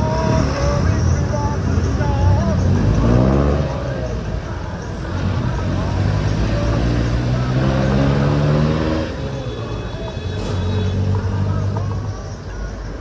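Road traffic heard from a bicycle in the bike lane: motor vehicle engines running close by, one speeding up with a rising pitch about three seconds in, then a long steady low engine drone, over a constant rush of traffic noise.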